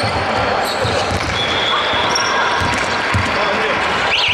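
A basketball bouncing several times on a hardwood gym floor, with voices in the background.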